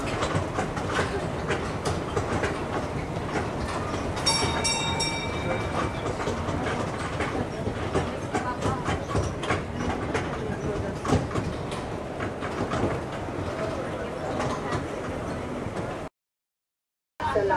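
Open-sided tourist road train rattling and clattering steadily as it rolls along, with a brief ringing tone about four seconds in.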